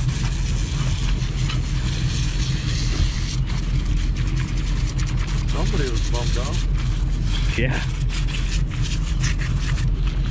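Boat engine running with a steady low rumble, under hiss and scattered thumps from wind on the microphone. Brief voice sounds come about five and a half seconds in and again near eight seconds.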